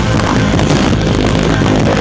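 A live rock band playing loudly, with a singer's lead vocal over the guitars and drums, heard from the audience.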